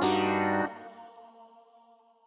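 The ending of a new jazz style hip-hop instrumental beat. The melody and bass play for under a second, then stop abruptly, and the last notes ring on and fade away to near silence.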